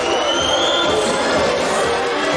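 Spectators at a swimming race cheering and chanting for the swimmers in a sustained wash of crowd noise, with a high tone that rises over about the first second.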